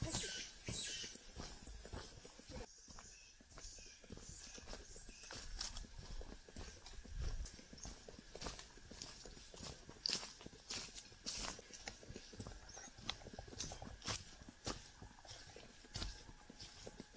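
Footsteps crunching on a leaf-littered, stony forest dirt trail, irregular steps about two a second. A steady hiss in the first two or three seconds cuts off suddenly.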